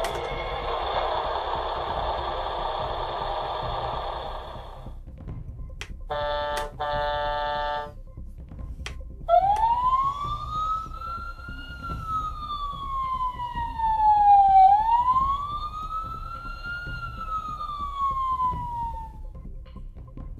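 Mickey Mouse Clubhouse toy fire engine playing its electronic sound effects when the button on its roof is pressed. First comes a noisy rush for about five seconds, then two short horn blasts, then a siren wailing up and down twice.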